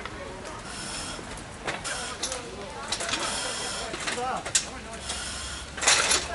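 Faint, indistinct voices over a steady hiss, broken by several sharp knocks, the loudest near the end.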